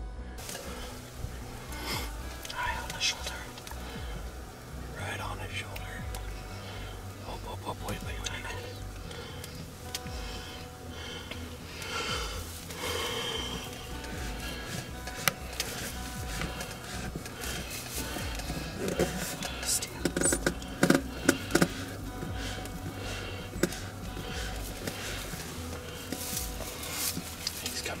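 Hushed whispering between two hunters over background music with a steady low bass, with a few soft clicks and taps in the second half.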